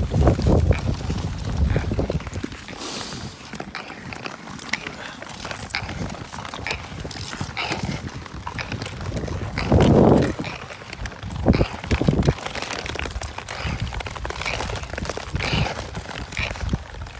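Nordic skate blades scraping and clicking over clear lake ice, with ice poles knocking on the ice in an irregular rhythm. A short louder sound breaks in about ten seconds in.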